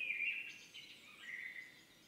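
Soft bird-like whistled calls: a first phrase that slides up and then down, a shorter steady note about a second later, then dying away.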